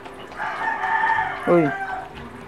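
A rooster crowing, one long call lasting about a second and a half.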